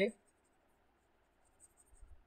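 The end of a spoken word, then a quiet room with a few faint ticks and soft taps near the end, made by the computer input device while digital ink is being erased from a slide.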